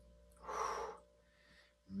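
A man blowing out one breathy "whew", about half a second long, a little under half a second in. A faint steady hum runs underneath.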